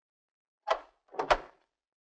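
A front door's latch and handle clacking as the door is unlocked and pulled open: two short knocks, a little under a second in and again about half a second later.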